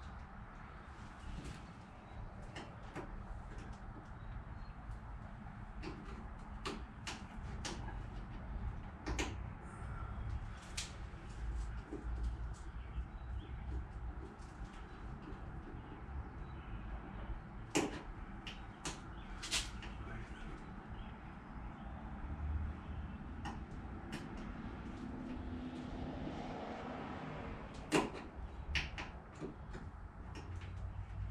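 Hands working a licence-plate light housing and plastic trim clips in the underside of a car's trunk lid: scattered small clicks and light knocks, with a sharper knock past halfway and another near the end, over a low steady rumble.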